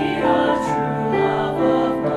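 Small mixed-voice choir of male and female singers singing held chords in several-part harmony.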